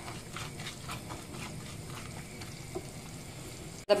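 Butter and sugar melting in a skillet for caramel, sizzling quietly with a fine steady crackle while a silicone spatula stirs them.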